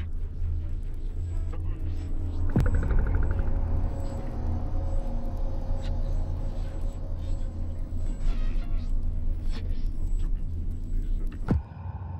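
Horror teaser-trailer soundtrack: a dark, low rumbling drone with a sharp hit about two and a half seconds in and another just before it cuts to silence at the end.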